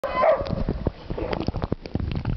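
A dog gives a brief cry at the start. Then water sloshes and clicks around a camera as it dips under the pool surface among swimming dogs.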